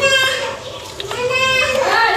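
A child's high voice calling out twice, a short call at the start and a longer, held call about a second in.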